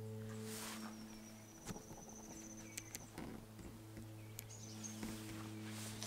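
A steady low hum with a stack of even overtones, under a faint high, warbling insect-like trill for a couple of seconds and a few light clicks.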